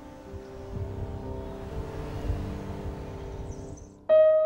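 Soft background music with long held notes that fade out near the end, over a low, uneven rumble.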